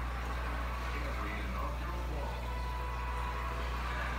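A steady low hum with faint voices murmuring in the background.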